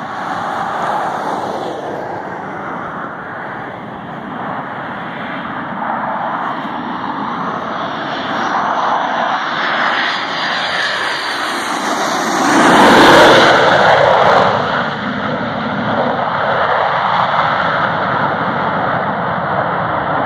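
Jet engines of a gear-down, F/A-18-family Navy jet on a low approach during field carrier landing practice (a "bounce"). A high whine over a rising roar builds as it comes in, reaches its loudest as the jet passes low overhead about 13 seconds in, then gives way to a steady rumble as it goes on down the runway.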